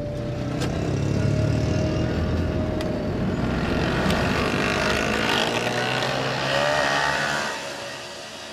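Road traffic: vehicle engines running steadily, dropping away near the end.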